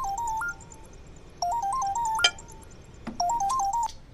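Mobile phone ringtone: a short electronic melody of stepped beeps, played three times with brief pauses between, and a single sharp click about halfway through.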